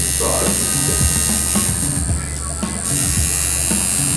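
Electric tattoo machine buzzing steadily while it works ink into the skin of an ankle.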